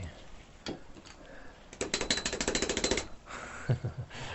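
A large 2-inch paintbrush being beaten against the rack of a brush-cleaning bucket to knock out the thinner: a quick run of about a dozen sharp whacks a second, lasting just over a second, about two seconds in. A single knock comes before it.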